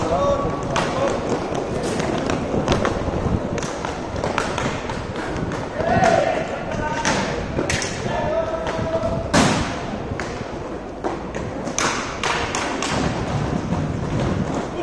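Inline hockey play: repeated sharp knocks of sticks striking the puck, the floor tiles and the boards, the loudest a little past nine seconds in. Players call out now and then, around six to seven seconds in.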